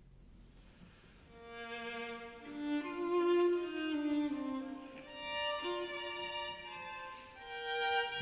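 Bowed strings of a chamber orchestra playing slow, held notes that overlap, entering softly after about a second of near quiet and swelling and fading in waves.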